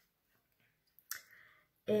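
Near silence broken by a single sharp click about a second in, followed by a short soft hiss.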